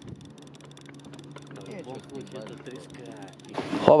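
Multiplier fishing reel being cranked to bring a hooked fish up to an inflatable boat, giving a quick run of faint clicks over a steady low hum and faint voices. Near the end the sound swells as the fish is lifted from the water.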